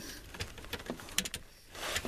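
Hands working among the metal frame and air-line fittings under a truck's air-ride seat: faint rustling and handling noise with a few light clicks in the middle.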